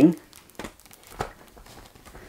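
A few faint plastic clicks and rustles as a vacuum cleaner's plastic extension wand and under-appliance nozzle are handled and fitted together.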